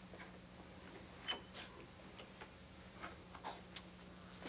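Faint, irregular taps of footsteps on a floor, over a steady low hum.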